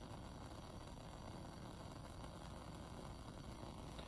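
Faint, steady hiss of a lit Bunsen burner flame.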